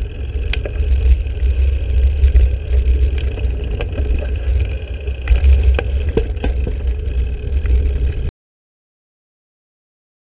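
Wind buffeting the microphone of a camera on a moving bicycle: a heavy, gusting low rumble with scattered clicks and rattles. The sound cuts off suddenly about eight seconds in.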